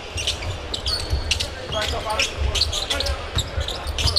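Basketball being dribbled on a hardwood court, with repeated ball bounces and short sneaker squeaks on the floor.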